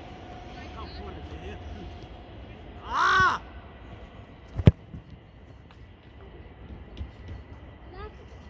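A football kicked once, a single sharp thud a little past halfway. About a second and a half before it comes one short, loud call that rises and falls in pitch.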